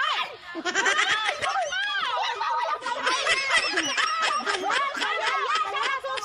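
A group of women laughing and calling out at once, many voices overlapping without a break.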